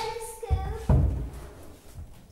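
A child's voice holds a sung note for about half a second, then two dull thuds sound about half a second apart, echoing in the hall.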